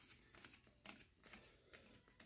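Near silence, with a few faint soft ticks and rustles as hands twist a side table's tube leg into place on a shelf.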